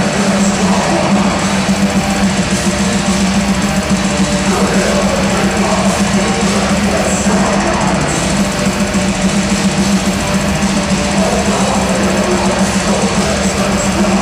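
Heavy metal band playing live at full volume: distorted guitars, bass and drums form a dense, unbroken wall of sound with a fast, hammering rhythm. It is heard from within the crowd through a small camera microphone, so the sound is boomy and muddy.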